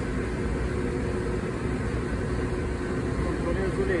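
Steady low rumble of running machinery with a faint droning hum; a man's voice comes in near the end.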